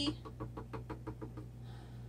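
A quick run of faint light clicks, about seven a second, dying away after about a second and a half, over a steady low hum.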